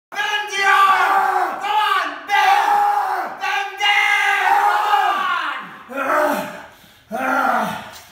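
A man letting out long, loud yells of exertion one after another, about five, each falling in pitch as it trails off, as he strains to bend a chin-up bar.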